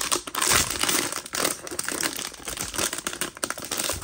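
Silver foil blind-box bag crinkling in the hands as it is worked open, a continuous run of sharp crackles.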